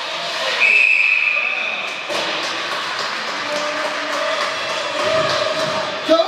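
Ice hockey referee's whistle: one steady, high blast of about a second and a half, starting about half a second in, blown to stop play. Around it, the echoing background noise and voices of a rink.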